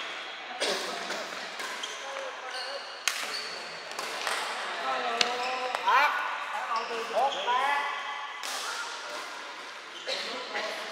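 Badminton rally: rackets strike the shuttlecock in sharp smacks a couple of seconds apart, and shoes squeak on the court floor in quick rising chirps.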